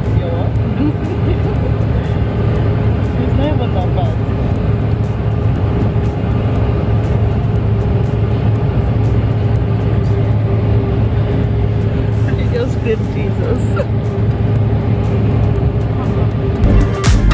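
Airliner cabin noise heard from a passenger seat: a steady, loud drone of engines and rushing air with a constant low hum underneath.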